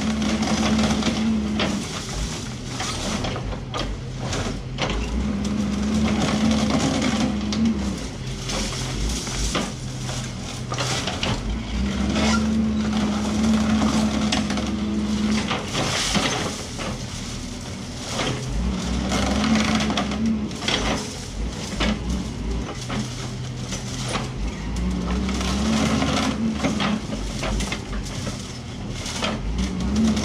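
Doosan DX140 wheeled excavator working a hydraulic concrete crusher jaw through reinforced-concrete rubble: irregular cracking and crunching of concrete breaking off the rebar, over the diesel engine, whose note rises and falls several times as the hydraulics take up load. The crushing strips the concrete from the steel so the rebar comes out clean for scrap.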